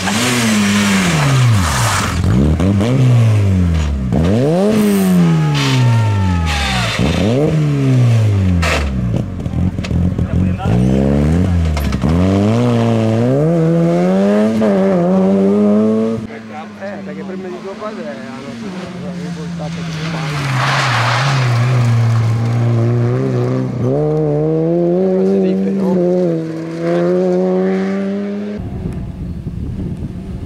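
Peugeot 106 rally car's four-cylinder engine revving hard on a stage, its pitch dropping and climbing again and again as the driver lifts, brakes and changes gear. After about sixteen seconds the sound cuts to a lower, steadier engine note that climbs again later, with another sudden cut near the end.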